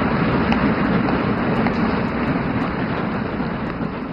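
Hall audience applauding, a dense, even patter of many hands that slowly dies away.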